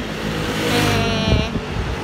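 Street traffic: motor scooters and cars running past, a steady engine hum with a brief higher whine in the middle.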